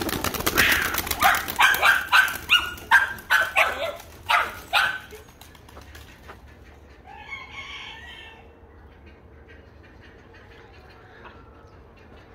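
Domestic pigeons flapping their wings as they take off, mixed with chickens' short calls, in a loud busy burst over the first five seconds. After that it is quieter, with a fainter bird call about seven seconds in.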